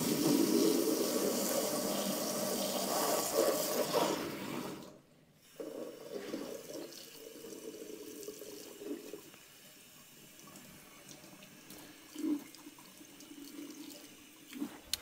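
Water from a pull-down kitchen faucet sprayer spraying hard into a stainless steel sink, cutting off abruptly about five seconds in. A weaker stream then runs for a few seconds before it dies down, with a short thump about twelve seconds in.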